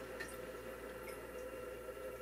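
Quiet room tone with a faint steady hum and a faint tick shortly after the start.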